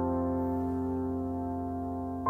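Yamaha AvantGrand N1X hybrid digital piano: a held chord rings on and slowly fades, with no new notes struck.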